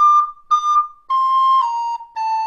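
Descant recorder playing a phrase: two short tongued notes on the same pitch (D), then a longer C that is slurred without a gap down to B flat about a second and a half in.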